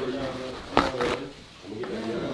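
People talking in a room, with two sharp knocks close together a little under a second in.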